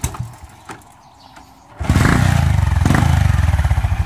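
Small motorcycle engine starting about two seconds in and running on with a rapid, crisp popping exhaust note through an aftermarket 'chicken pipe' muffler packed with steel wool to make it louder and crisper.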